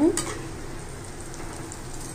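Besan curry bubbling at the boil in a steel pan, stirred with a wooden spatula: a steady, soft bubbling and scraping.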